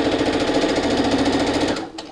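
Electric sewing machine running at a steady speed, sewing a straight-stitch seam, then stopping shortly before the end.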